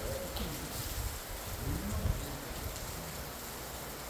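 Steady open-air background noise: an even hiss over a low, uneven rumble, with a faint voice about two seconds in.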